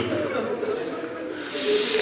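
A lull in a man's speech with faint voices lingering in the hall. Near the end there is a short breathy hiss, as of a sharp intake of breath.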